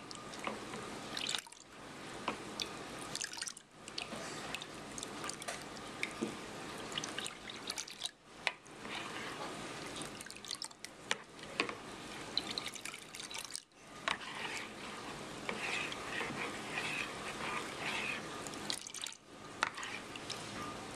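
Watery molasses mixture being stirred and scooped in a bowl with a stainless steel measuring cup: liquid sloshing and dripping, with sharp clicks of the cup against the bowl, in runs broken by a few brief pauses.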